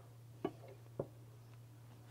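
Two faint clicks about half a second apart, a spoon knocking the pan while stirring a thickening sauce, over a low steady hum.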